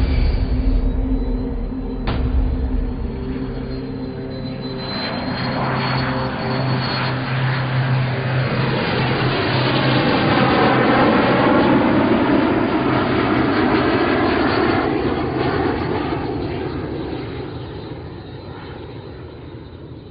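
Cirrus SF50 Vision jet prototype's single Williams FJ33 turbofan at takeoff power as the jet lifts off and climbs out overhead, with a high whine over a steady rush. It grows louder to a peak about halfway through with a sweeping whoosh as it passes over, then fades steadily as it climbs away.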